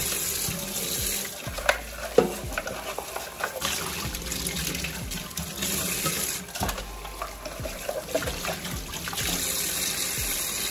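Kitchen tap running into a stainless steel sink as a dish-rack part is rinsed under the stream. A few sharp knocks come through, the loudest two about two seconds in.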